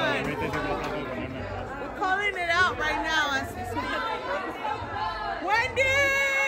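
Several people talking at once in lively, excited chatter, with overlapping voices throughout.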